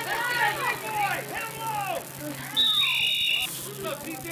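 Spectators shouting and cheering during a play, then a referee's whistle blows once, a short shrill two-toned blast of under a second near the end, ending the play.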